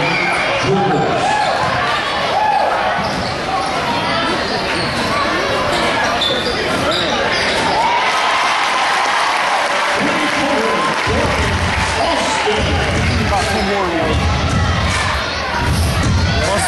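Gymnasium crowd noise during a live basketball game: many voices talking and calling out at once, with a basketball bouncing on the hardwood court, echoing in a large hall.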